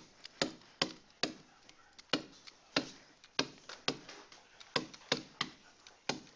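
Stylus pen clicking and tapping on a tablet screen during handwriting: a string of short, sharp, irregular clicks, two or three a second.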